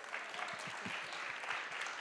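Audience of a few dozen people applauding, a steady patter of many hands clapping.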